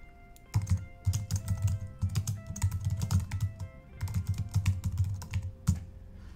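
Typing on a computer keyboard: a quick, irregular run of key clicks from about half a second in, with a short break about two-thirds of the way through, as a short message is typed.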